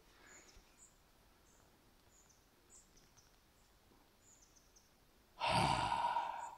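A quiet outdoor background with faint, short, high chirps every half second or so, then, about five and a half seconds in, a man's loud, forceful exhale close to the microphone.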